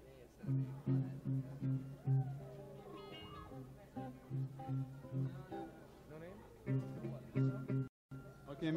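Guitar plucking the same low note over and over, about two or three times a second in short runs with pauses: an instrument being tuned up between songs.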